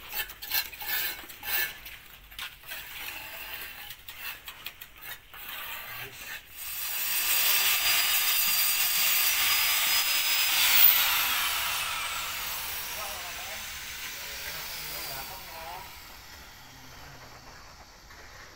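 Scraping and tapping of masonry hand work, then an electric angle grinder runs loudly with a steady high whine from about six and a half seconds in. It is released and spins down, its whine falling in pitch and fading over several seconds.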